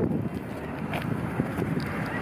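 Low rumbling wind noise on the microphone, with a few light taps.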